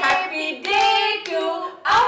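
Women's voices in a sing-song, with long held notes.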